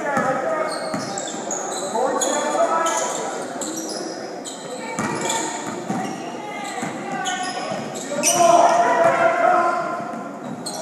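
Basketball game in a gym: the ball dribbling on the hardwood court, short high sneaker squeaks, and players and spectators calling out, with louder shouting near the end.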